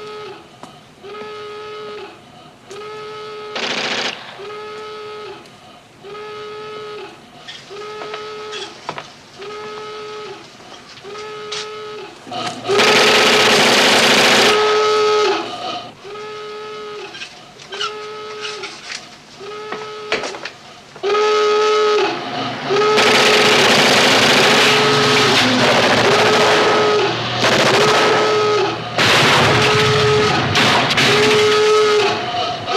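A radio signal tone beeping steadily, a little under once a second, each beep a short held note. Two long stretches of loud hiss sweep in over it, one about halfway through and another from near the three-quarter mark.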